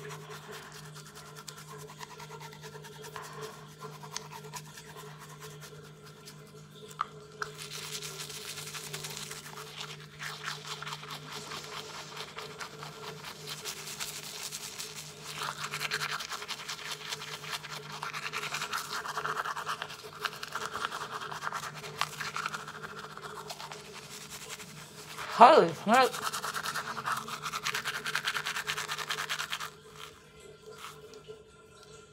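A toothbrush scrubbing a tongue coated in foaming toothpaste, a rapid wet rasping that gets louder about seven seconds in and again past the middle. A steady low hum runs underneath.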